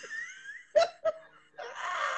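Laughter in a few short bursts.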